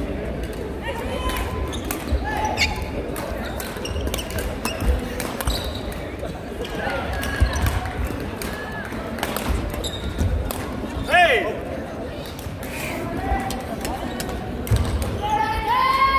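Badminton doubles rally on a wooden gym floor: sharp racket strikes on the shuttlecock and footfalls, with rubber-soled shoes squeaking loudly as players lunge and turn, strongest about eleven seconds in. Voices chatter throughout.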